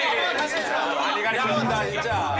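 Several men talking over one another in overlapping chatter.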